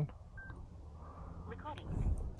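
Electronic beeps from a small device as it is switched on: a short single beep about half a second in, then a brief chirping chime near the end.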